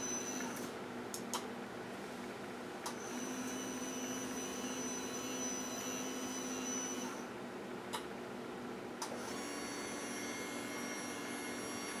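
Power wheelchair seat-tilt actuator motor running with a steady hum. It runs in three stretches: it stops just under a second in, runs again from about 3 s to 7 s, then starts once more near 9 s. A few light clicks come as it stops and starts.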